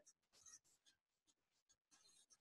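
Near silence: a pause between sentences on a video call.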